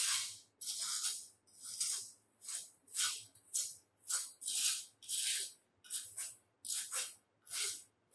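A moulder's trowel scraping over rammed moulding sand in a cope box in short repeated strokes, about two a second, smoothing and finishing the mould's surface.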